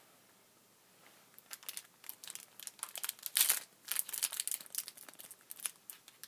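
A football trading card booster pack being torn open by hand, its wrapper crinkling and crackling irregularly, starting after about a second of quiet and loudest about halfway through.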